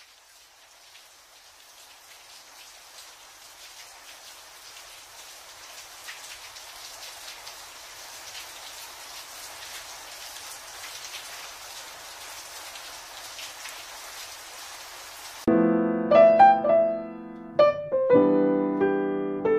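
Steady hiss of fine water spray, like rain, slowly getting louder. Piano music comes in suddenly about three seconds before the end.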